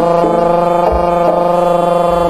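Live Jaranan accompaniment music: one long, steady held melodic note over a low drone, with a single low drum thump about a second in.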